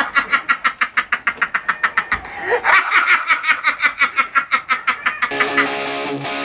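A man laughing hard in rapid, even bursts, about five a second, breaking higher about two and a half seconds in. Guitar music starts near the end.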